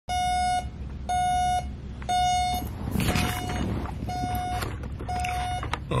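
Digital alarm clock beeping: a steady half-second tone repeated about once a second. After the first three beeps they turn quieter, with a rough noise under them.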